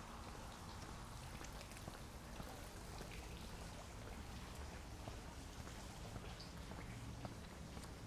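Faint trickle and patter of water from a front-yard garden fountain, with many small irregular drips.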